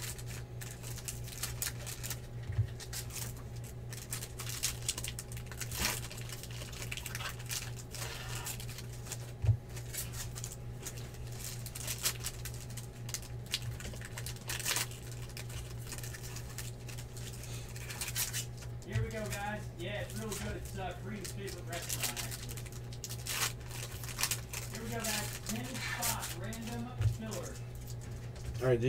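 Foil wrappers of Bowman Chrome card packs being torn open and crinkled by hand, with cards slid and stacked: a run of short, sharp crackles and clicks over a steady low hum.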